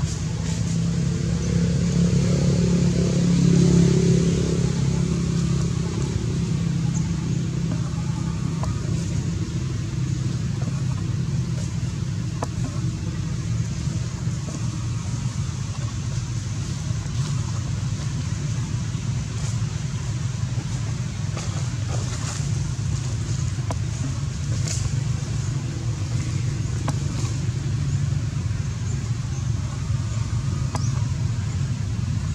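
Steady low engine rumble, like a motor vehicle running nearby, swelling about two to four seconds in and then holding steady, with a few faint clicks over it.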